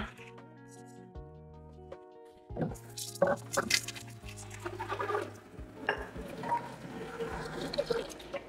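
Soft background music, then from about two and a half seconds in glass clinking and knocking at a kitchen sink, followed by tap water running into a glass pitcher.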